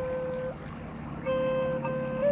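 Native American flute holding a long steady note, which breaks off about half a second in and comes back in on the same pitch a little past the middle, over a low steady drone.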